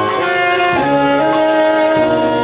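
A wind band playing live: flutes, clarinets and saxophone with brass, over a sousaphone bass line that steps from note to note, played steadily and loudly.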